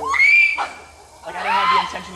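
A person's high-pitched yell that rises and holds for about half a second, then a second shouted call about a second later.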